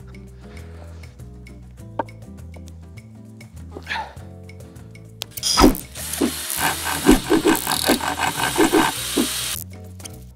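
A knife blade scraping and splitting wood from a short log in repeated rough strokes over steady background music. The scraping starts about halfway through and stops abruptly just before the end.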